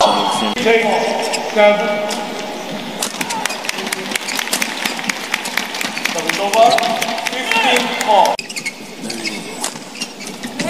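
Badminton rally: a quick run of sharp racket hits on the shuttlecock and shoe squeaks on the court floor, over voices in a large hall. The sound drops off suddenly about eight seconds in.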